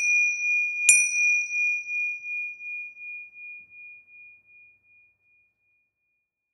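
High meditation bell struck twice, a second time about a second in, leaving one clear ringing tone that pulses slowly as it dies away over about four seconds.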